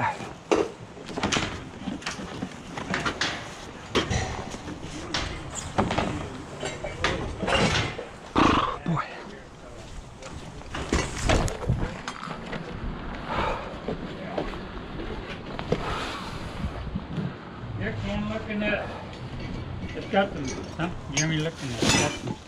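Handling noise of a man clambering out of a trailer packed with bags, bedding and clothes: rustling and scattered knocks and clatters, with indistinct voices now and then.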